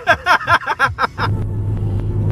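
A man laughing heartily for about a second, then the steady low drone of a car's engine and tyres heard from inside the cabin as it drives along.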